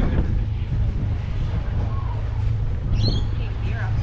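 Catamaran's diesel engine idling in neutral after berthing: a steady low rumble, with faint voices over it.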